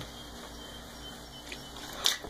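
Faint, steady background noise with a single light click about one and a half seconds in.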